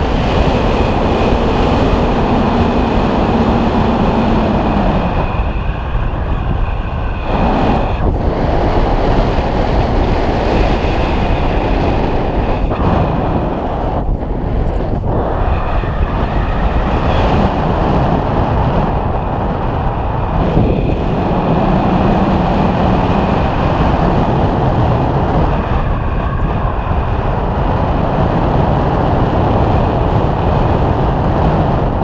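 Wind rushing over the camera microphone during paraglider flight: a loud, steady rumble that dips briefly a few times.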